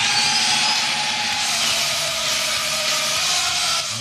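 A loud, steady mechanical noise like a motor or power tool, with a whine that slowly falls in pitch. It is a recorded sound effect dropped into the radio broadcast.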